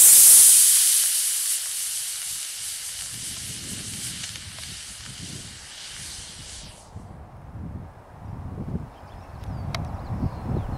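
Hobby rocket motor (24 mm) burning with a loud hiss as the rocket glider leaves the pad and climbs, fading as it climbs away and cutting off suddenly about seven seconds in at burnout. Wind rustle follows.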